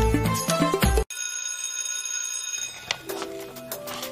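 Background music with a steady beat that cuts off abruptly about a second in, followed by a held, bright ringing chime lasting about a second and a half, then a different song starting quietly near the end.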